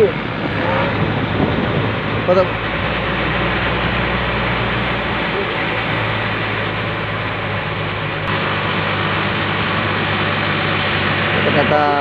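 Fishing boat's engine running steadily, with a constant rush of wind and water over it.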